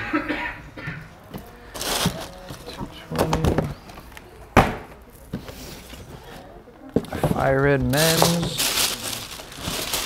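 Indistinct voices in a shop, with a single sharp knock about halfway through as a cardboard shoebox is set down on the counter, and papery rustling from tissue paper in a shoebox near the end.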